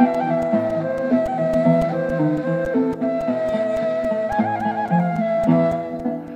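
Instrumental Turkish classical music, a saz semaisi in makam Buselik. A breathy end-blown ney carries the melody, with a wavering ornament about two-thirds through, over a steady pulse of short plucked strokes and accompanying instruments.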